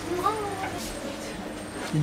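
Indistinct voices murmuring in the background of a shop. About a quarter second in, a short vocal sound rises and then falls in pitch.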